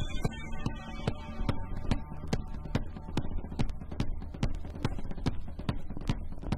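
1982 live recording of a punk rock band in an instrumental passage, with a steady beat of drum hits about two or three times a second.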